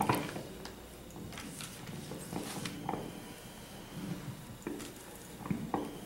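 Pen and paper handling at a table: scattered light scratches, rustles and small clicks, with a faint low murmur under them.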